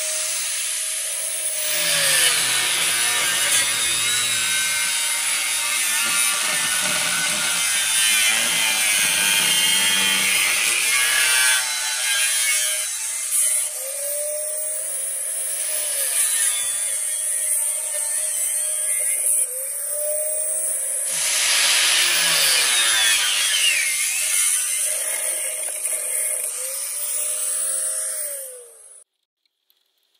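Handheld grinder grinding into the fibreglass insulating strips that lock the copper windings into a large generator stator's slots. It is switched on and off several times, its motor whine rising and falling each time. The sound cuts off abruptly about a second before the end.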